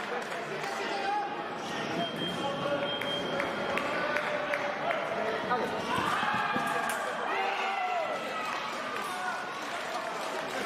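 Sabre fencers' feet stamping on the piste with sharp clicks and knocks, then a shout from about six seconds in as the touch is made, over the voices of a large sports hall.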